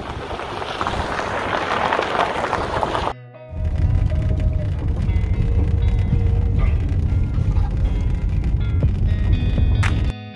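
Wind and road noise inside an open-top car driving on a gravel road for about three seconds. After a sudden cut, music with a strong low bass takes over.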